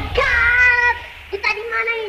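Breakdown in a jungle dutch remix: the beat drops out, leaving a high-pitched vocal sample held on two long notes over a low bass drone.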